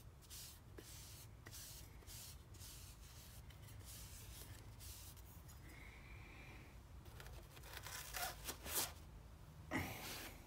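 Faint rubbing of a cloth working oil finish into a wooden palette-knife handle, followed by a few brief handling sounds near the end as the knives are set back into a foam stand.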